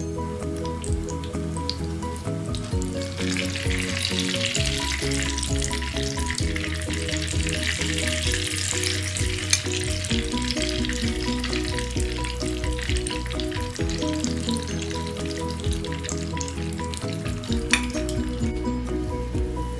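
Oil sizzling as lumpianada deep-fry in a pan, the sizzle growing louder a few seconds in and easing near the end, with a couple of sharp clicks. Background music plays throughout.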